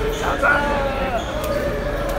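Several people's voices talking and calling out in a hard-walled tunnel, with a sharp hand slap about one and a half seconds in.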